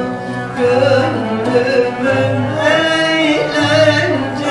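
A woman singing a Turkish folk song (türkü) from Elazığ solo, holding long notes with a wavering vibrato over steady instrumental accompaniment from a Turkish music ensemble.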